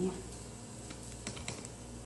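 A few light clicks and taps from hands setting a rolled eggplant slice into a ceramic baking dish, over a low steady hum.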